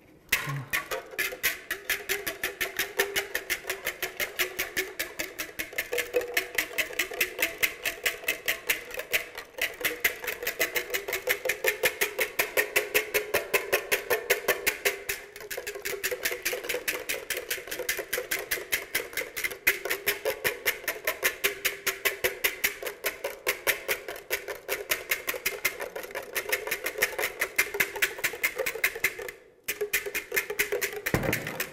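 Wire balloon whisk beating egg whites for meringue in a glass bowl by hand: fast, even clinking of the wires against the glass, several strokes a second, stopping briefly near the end.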